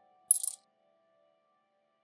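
A brief cluster of sharp, high clicks, rough opal pieces knocking together as they are handled.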